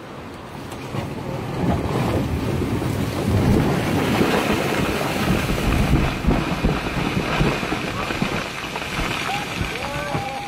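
Rockfall: a boulder breaking loose from a cliff-top and tumbling down the rocky slope, a rough rumbling noise that builds about a second in and slowly eases, with wind buffeting the microphone.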